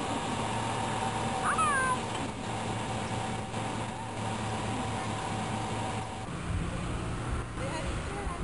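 Camcorder soundtrack of an SUV rolling slowly past on a park road: a steady engine hum under outdoor background noise, with a brief high falling squeal about a second and a half in.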